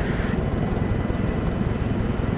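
Steady low rumble of an aircraft engine in flight, with no single blast standing out.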